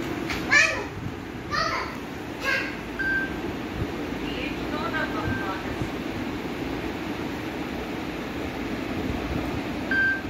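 A young child's voice calling out three short times in the first few seconds, over a steady low hum, with a couple of brief high beeps later on.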